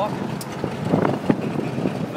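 1951 International pickup's engine, fitted with a three-quarter race cam, running as the truck crawls ahead, with its exhaust smoking. Wind noise on the microphone.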